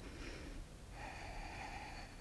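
A woman breathing hard and faintly through her nose with the effort of a scissor-kick core exercise: one breath fades out at the start and another long one begins about a second in.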